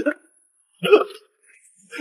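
A man's single short, loud pained yelp just under a second in, as he is slapped across the face.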